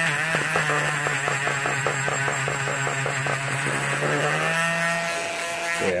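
Small handheld rotary tool spinning a wire wheel brush against a die-cast metal toy cab, scrubbing off paint that the chemical stripper left behind. The steady motor whine carries a rapid, even scraping chatter. Near the end the chatter fades and only the motor's whine is left.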